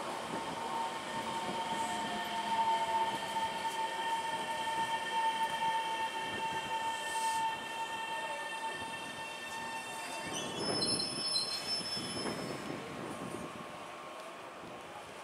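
Taiwan Railway EMU700 electric commuter train slowing to a stop at a platform, its running noise carrying a steady high-pitched squeal. About ten seconds in the squeal shifts to higher tones as the train comes to a halt.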